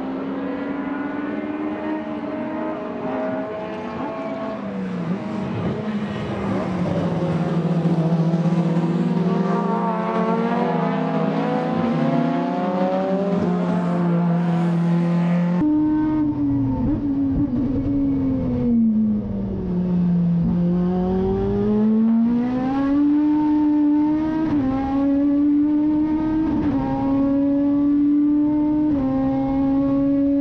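Toyota AE86 race car's four-cylinder 4A-G engine running hard on track. For the first half it is heard from trackside at a fairly steady pitch. After a cut about halfway through it is heard from inside the cabin, where the revs fall smoothly, climb again and step through quick gearshifts.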